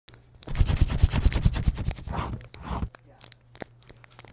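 Paper being crumpled and torn: a dense, rapid crackling for about two and a half seconds, with two short swishes near its end, then a few scattered crackles.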